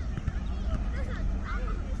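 Distant voices of children and adults calling out across a football pitch during a youth match. Underneath is a steady low wind rumble on the microphone.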